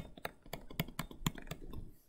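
Stylus tapping and clicking on a tablet screen while writing by hand: an irregular run of short clicks, several a second.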